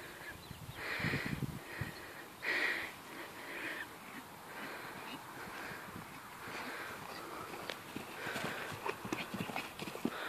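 A pony cantering on grass: faint, soft hoofbeats.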